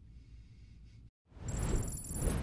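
Faint room tone, a brief drop to dead silence, then, about a second and a half in, a loud whoosh with thin, high, steady whistling tones on top: an edited-in transition sound effect.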